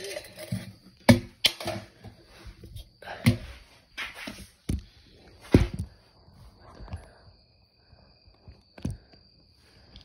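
Handling noise from a phone camera being moved about, with scattered sharp knocks and clatters, the loudest about a second in and just past the halfway point, and rustling in between. A faint steady high-pitched tone runs underneath.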